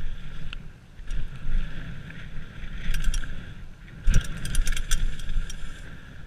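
Mountain bike running fast down a dirt forest trail: wind buffeting the microphone and tyre rumble, with the bike rattling and clicking over bumps, the clicks densest about four seconds in.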